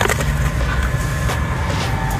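A steady low rumble with a faint steady whine running under it, and a couple of short clicks as a muddy metal coin tray is lifted out of a cash box.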